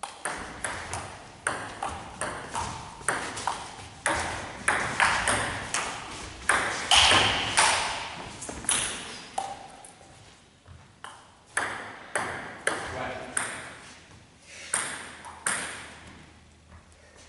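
Table tennis rally: a celluloid/plastic ping-pong ball clicking off the table and the rubber-faced bats in a rapid, irregular run of sharp clicks, each ringing briefly in the echo of a large sports hall, with a short lull about two thirds of the way through.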